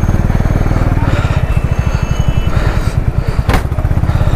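Motorcycle engine running at low speed, a rapid, even pulsing as the bike rolls slowly over a rough gravel road, with a short knock about three and a half seconds in.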